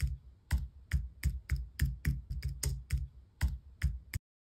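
Computer keyboard typing sound effect: a run of key clicks, about three to four a second, each with a low thump beneath, against otherwise dead silence.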